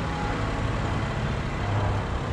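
2013 Smart Fortwo's small three-cylinder petrol engine idling steadily, a low even hum.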